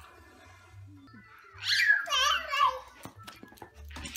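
A toddler squealing loudly in a high, wavering voice for about a second, starting about a second and a half in.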